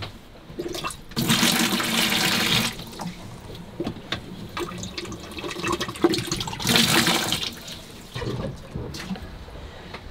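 A boat's marine toilet being flushed and scrubbed: water rushes into the bowl twice, the first time for over a second and the second time more briefly, with the slosh and scrape of a toilet brush working the bowl in between.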